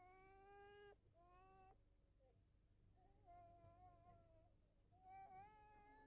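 Faint animal calls: four drawn-out, pitched cries, each about half a second to a second long, the third slightly wavering.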